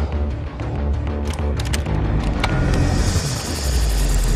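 Film score: a low, steady drone with sustained tones, and a quick run of sharp clicks about a second in.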